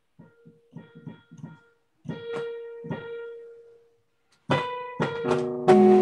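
Electronic keyboard played with a piano sound: a few short, soft notes, then a held chord about two seconds in. After a brief pause, louder full chords come in near the end.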